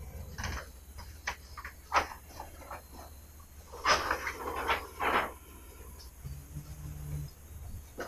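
Large paper plan sheets rustling and crinkling as they are handled, loudest about four to five seconds in, with a short low hum about six seconds in.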